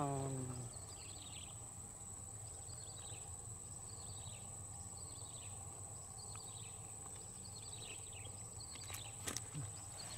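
A small animal repeats a short, falling chirp about every three quarters of a second. Under it runs a steady high-pitched whine. A single sharp click comes near the end.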